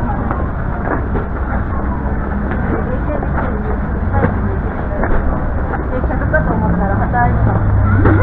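Indistinct voices of passers-by over a steady low rumble of street noise, with a deeper hum that grows stronger in the second half.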